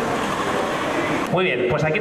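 Mostly speech: after about a second of steady crowd noise, a man starts speaking into a microphone through a PA.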